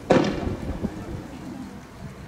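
A single loud bang about a tenth of a second in, followed by a rumbling echo that fades over the next second or so.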